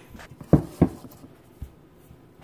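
Two dull low thumps about a third of a second apart, then a fainter one: handling knocks of a rice cooker's metal inner pot, filled with rice and water, against the counter.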